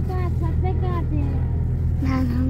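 Steady low rumble of a moving car heard from inside the cabin, with a young girl's high voice over it in drawn-out, gliding notes.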